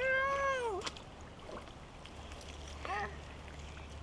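A toddler's high, whiny voice: one long drawn-out "Nooo", held and then falling in pitch at the end, followed by a short second cry about three seconds in.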